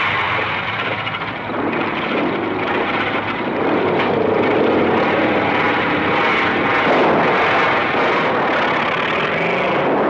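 A group of motorcycles revving and pulling away together, a dense mass of engine noise that holds throughout and swells a little after the first couple of seconds.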